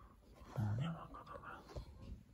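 A person breathing close to the microphone, with a short, low murmured hum about half a second in.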